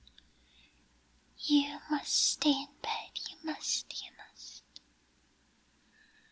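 A woman whispering close to the microphone, a short run of breathy words with a few voiced syllables, starting about one and a half seconds in and trailing off before five seconds.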